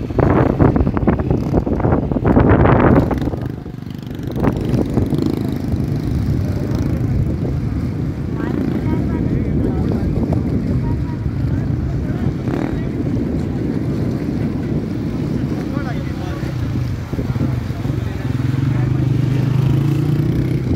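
A steady low rumble of outdoor noise with faint voices of people in the background; rougher and louder for the first three seconds.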